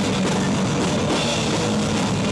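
Live rock band playing loud, with drums and electric guitars in a steady, dense wash of sound.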